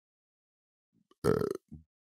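Silence for about a second, then a man's single short hesitation sound, 'uh'.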